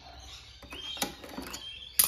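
Quiet handling noise: a few faint sharp clicks and light metallic taps from hands and pliers working on a lawn mower engine, with faint short high chirps.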